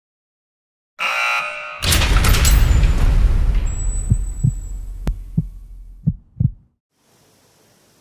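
Logo intro sound effect: a short bright buzzing hit about a second in, then a loud deep boom that dies away over several seconds, with a few dull thumps like heartbeats and one sharp click, ending in near silence.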